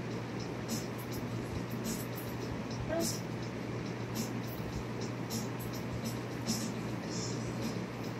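Mouse squeaks and scratching from a video for cats, played through computer speakers: short high-pitched ticks at irregular intervals, several a second, over a steady low hum.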